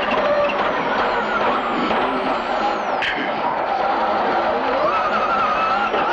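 Subaru Impreza WRC's turbocharged flat-four engine heard from inside the cabin, running hard with a high whine over it. The pitch drops at a sharp crack about three seconds in, then climbs again.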